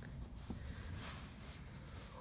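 Faint handling noise from gloved hands working small parts of a trimmer throttle handle: a soft rustle with a light click about half a second in.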